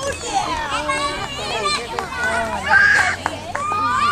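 Young children chattering and calling out over one another, with one louder high-pitched cry about three seconds in.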